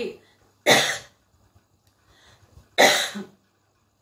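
A woman coughs twice, two short coughs about two seconds apart.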